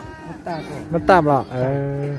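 A man's voice talking, ending on a long drawn-out vowel.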